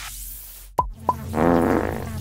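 Cartoon sound effects as rocks are handed out: a high whoosh, a sharp knock about three-quarters of a second in with a smaller one just after, then a longer buzzy sound near the end.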